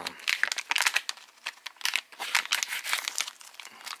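Plastic packaging crinkling as it is handled: a bubble-wrap pouch and a small clear zip bag rustled between the fingers, in quick, irregular crackles.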